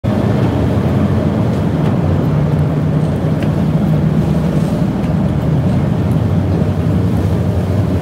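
Passenger ferry under way: a steady, loud low drone from the ship's engines.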